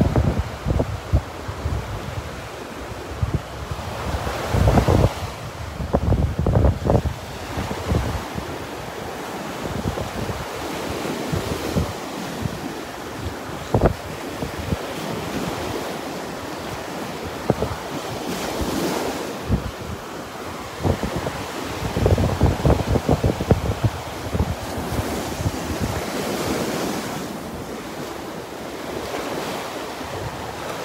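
Rough Gulf surf breaking and washing up the beach, with gusty wind buffeting the microphone in loud low bursts a few seconds in and again past the middle.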